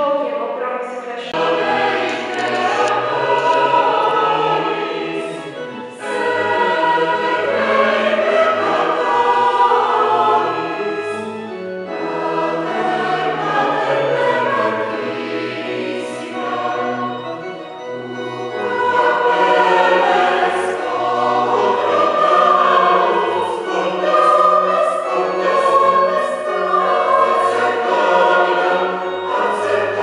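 Mixed choir of women's and men's voices singing in long phrases, easing off briefly every few seconds between them.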